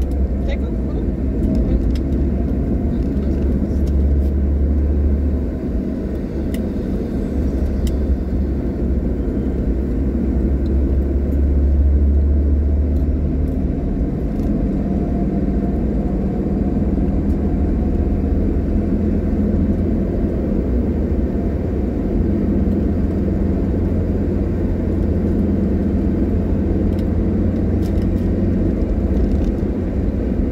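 Steady low rumble of a car's engine and tyres while driving along a paved road, heard from inside the cabin.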